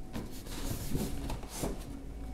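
Cardboard outer sleeve sliding up off a cardboard box, a soft irregular rubbing of card on card.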